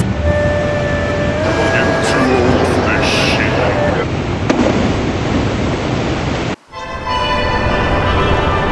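Waterfall rushing steadily under background music with long held notes. The sound drops out abruptly for a moment about six and a half seconds in, then the water and music carry on.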